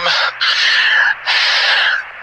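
A man's two heavy breaths in a pause of radio-style dialogue. Each is a short rasping rush of air, about two-thirds of a second long, with a brief gap between them.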